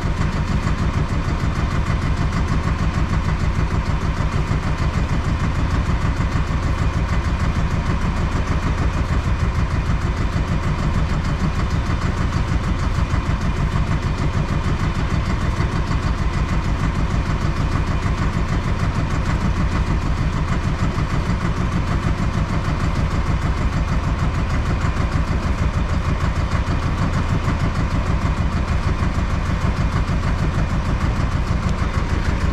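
A fishing boat's engine running steadily, with a fast even beat and no change in speed throughout.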